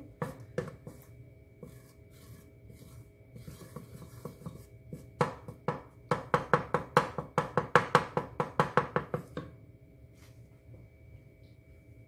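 Wooden spoon scraping and knocking against the bottom and sides of an aluminium pressure cooker, stirring coconut oil that is still solid and melting. There are scattered faint scrapes at first, then a quick run of strokes at about four a second for about four seconds, stopping about nine seconds in.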